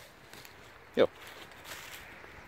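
A single short spoken word about a second in, over faint outdoor background noise.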